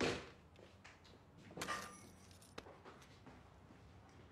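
Two sudden knock-like sounds in a quiet room, one at the start and a second, slightly ringing one about a second and a half later, followed by a few faint clicks.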